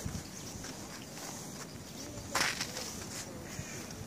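Footsteps on packed snow with a quiet outdoor background, and one short, louder crunch a little past halfway.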